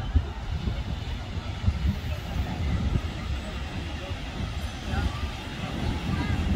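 Indistinct voices, too faint to make out, over a steady low outdoor rumble.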